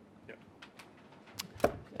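A few short, faint clicks and taps in a quiet room, with one louder knock about one and a half seconds in.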